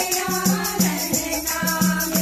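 A group of women singing a Kumaoni Holi folk song together, with hand-clapping and a steady percussion beat with a jingling rattle, about three beats a second.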